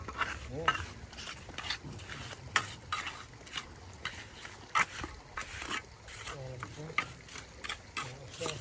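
Hand trowel scraping and patting wet concrete as it is smoothed around the base of a metal railing post, in short irregular strokes roughly a second apart.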